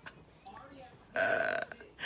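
A woman laughing: after a quiet first second, one drawn-out breathy laugh sound lasting about half a second, and another beginning right at the end.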